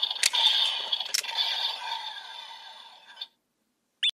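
Electronic sound effect from a DX Evol Driver toy belt's small built-in speaker, tinny with steady high tones, broken by a couple of sharp plastic clicks as the toy is handled. It fades and stops a little over three seconds in, and a short rising chirp comes right at the end.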